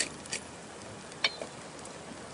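Mushrooms, spring onions and garlic frying gently in a pan on a portable gas stove: a soft, steady sizzle. A couple of clicks from the pepper mill come right at the start, and another faint click comes about a second in.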